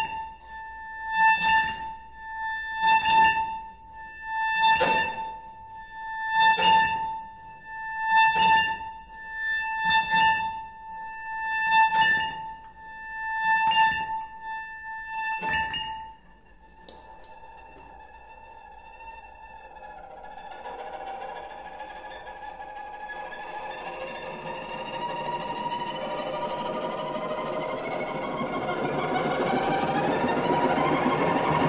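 Cello and electric guitar playing contemporary experimental music. For the first half a single high note is held and swells in even pulses about every two seconds, ten times. It breaks off about halfway, and after a quieter stretch a dense, many-voiced texture builds steadily louder.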